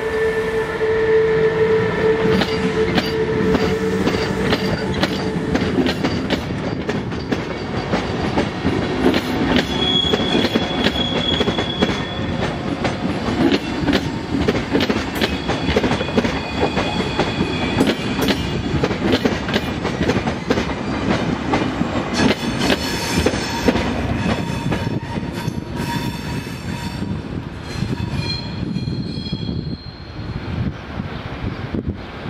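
SBB Re 460 electric locomotive passing close by with a steady tone for the first few seconds. Its passenger coaches follow, rolling past with dense wheel clatter over rail joints and points and brief high wheel squeals.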